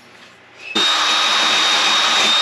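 Cordless drill with a wire wheel brush starting suddenly about three-quarters of a second in and then running steadily with a thin high whine, scrubbing white rust off a Kawasaki W650's finned exhaust flange.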